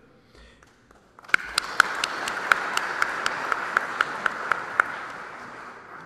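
Audience applauding, starting about a second in and dying away near the end, with a number of sharp individual claps standing out.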